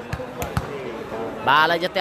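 Volleyball impacts during play: about three dull thumps of the ball in quick succession within the first second.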